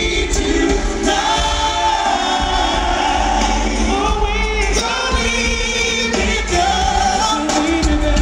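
Live R&B vocal group singing with their band: several voices in harmony and wavering held notes over keyboards and a heavy bass.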